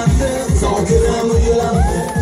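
Uzbek pop dance song with a steady kick-drum beat, about two and a half beats a second, under a melody.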